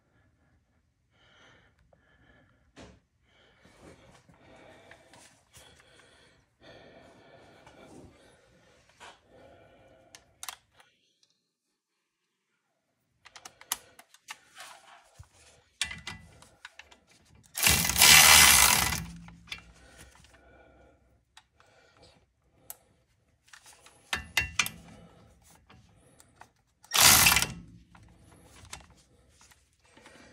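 Hand tools and metal parts being worked on a car's front brake caliper: scattered clicks, taps and scrapes, with two loud, noisy bursts about a second long, one midway and one near the end.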